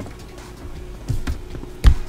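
A heavy hardcover omnibus being handled on a desk: a few soft knocks, then one sharp low thump near the end.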